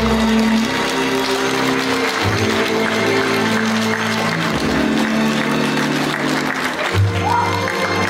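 Audience applause over music that plays held chords.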